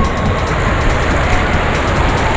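Water and a rider sliding fast down an enclosed water-slide tube: a loud, steady rushing rumble.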